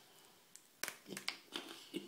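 Faint crunching of a Cadbury Picnic bar's crisp wafer, peanut and caramel filling: a short quiet, then a string of small crackles and clicks from about a second in. The wafers are really crispy, and the taster suspects the bar is dried out.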